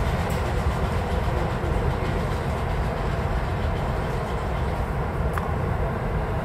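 Keikyu electric train at the station platform: a steady low rumble, with one sharp click about five seconds in.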